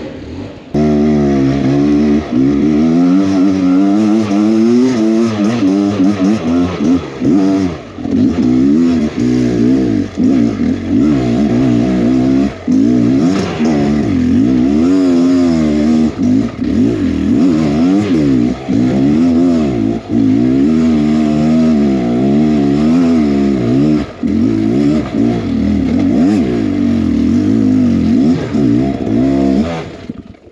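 Beta X Trainer 300 dirt bike's two-stroke engine revving up and down under constant throttle changes, its pitch rising and falling every second or two. It cuts in abruptly just under a second in.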